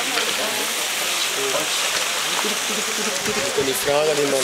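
A steady hiss, with faint voices of people talking in the background.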